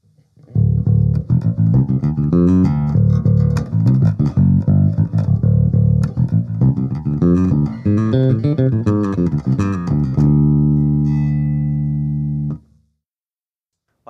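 Ibanez GVB1006 six-string electric bass played through an amp with the Aguilar preamp's treble boosted: a quick run of notes with bright, clicky attacks, ending on a held chord that is damped suddenly a little over a second before the end.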